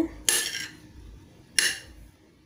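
A kitchen knife cutting canned pineapple chunks on a ceramic plate, the blade scraping against the plate in two short strokes: one just after the start and a sharper, shorter one about a second and a half in.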